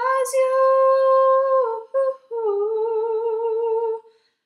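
A young woman singing unaccompanied in a small room. She holds one long steady note, dips briefly and sings a short note about halfway through, then holds a second, slightly lower note with a wavering vibrato until near the end.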